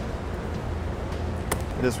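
Steady low hum of a workshop's room tone, with one sharp click about three quarters of the way through; a man's voice starts at the very end.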